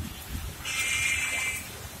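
A vehicle horn sounds once, a single high-pitched note about a second long, starting just over half a second in.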